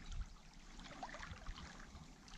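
Faint, steady running of a shallow creek, with a low rumble underneath and a few small ticks.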